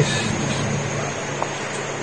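MSR WhisperLite Universal stove burning isobutane, its burner giving a steady rushing roar with a low hum beneath.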